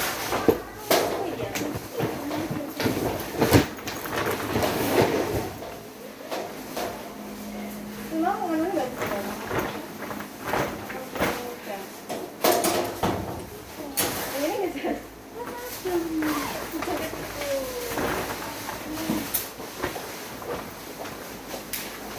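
Indistinct voices in the background, with scattered knocks and rustling as bags and luggage are handled; the sharpest knocks come in the first few seconds.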